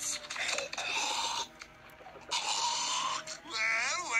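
Breathy, strained vocal noises of a character tasting something foul, with a short lull in the middle and a rising vocal glide near the end.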